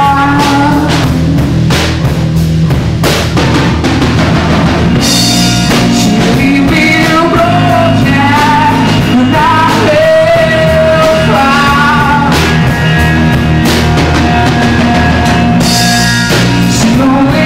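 A rock band playing an original song live at rehearsal: a drum kit keeps a steady beat under a lead voice singing, with the full band sounding together at a loud, even level.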